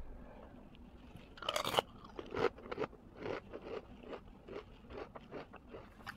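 A person biting into crunchy food close to the microphone, with a loud crunch about one and a half seconds in, then chewing it with steady crunches about two or three times a second.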